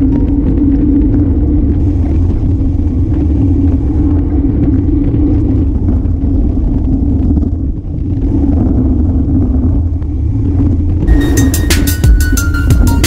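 Wind buffeting and road rumble on a camera mounted on a racing bicycle moving at speed: a loud, steady low roar of air and tyres on the road surface. Music comes back in about a second before the end.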